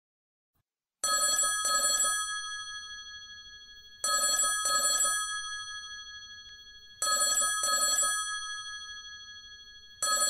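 Telephone ringing in a double-ring pattern: two short rings followed by a fading tail, repeating every three seconds, three times after about a second of silence. The call goes unanswered and is then picked up by voicemail.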